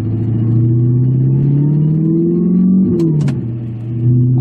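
Audi R8 V8 heard from inside the cabin with its Armytrix valved exhaust closed, pulling as the engine's pitch climbs for nearly three seconds. About three seconds in the pitch drops at an upshift, with two sharp clicks.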